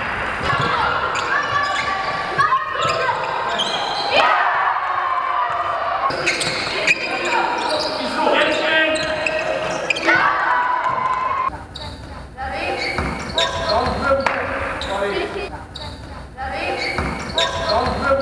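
Basketball bouncing on an indoor court during play, with players' voices calling out, echoing in a large sports hall.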